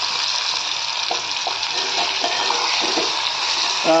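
Marinated chicken pieces sizzling steadily in hot oil in a clay pot (matka) on a gas burner, with a few faint knocks from the slotted spoon against the pot.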